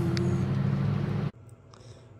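Car cabin noise from inside a car: a steady low rumble of the running engine. It cuts off abruptly a little over a second in, leaving quiet room tone.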